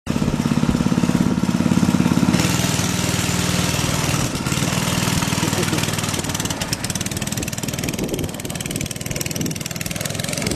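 A go-kart's small engine running with a steady, buzzing note, cut abruptly a couple of seconds in. Later the engine fades as the kart pulls away, with crunching clicks from the tyres on gravel.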